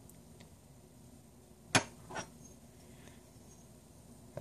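Small steel revolver parts clicking together as they are handled: one sharp metallic click a little under two seconds in, then a fainter one about half a second later.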